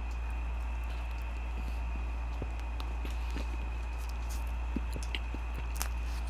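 Steady low electrical hum with a faint high whine, and scattered soft clicks and smacks of a man chewing food close to the microphone.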